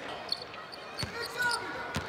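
Basketball being dribbled on a hardwood court in an arena: a few sharp ball bounces, with a brief high squeak in between, over the general noise of the crowd in the hall.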